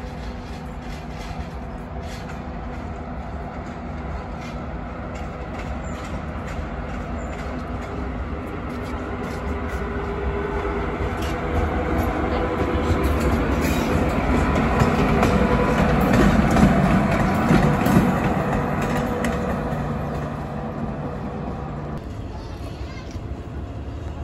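SS8 electric locomotive passing through the station tracks. Its steady machinery hum and the rumble of its wheels on the rails grow louder to a peak about two-thirds of the way through, then fade.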